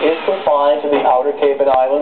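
A man's voice speaking: a TV weatherman's forecast, heard through a television set's speaker.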